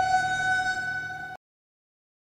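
A single steady held tone with a stack of overtones, like a horn or a sustained synth note. It fades slightly and then cuts off suddenly about a second and a half in.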